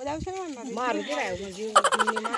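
Several women's voices chattering and laughing, the loudest burst coming near the end.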